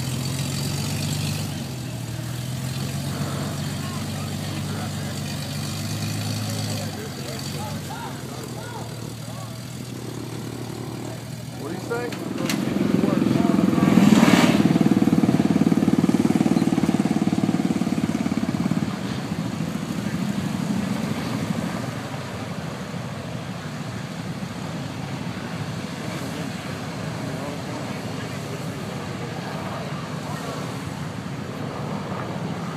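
Off-road buggy engines. First an engine idles with its pitch stepping up and down a few times. Then a louder, rougher engine runs hard for several seconds in the middle, with one sharp knock in it, before dropping back to a lower steady rumble.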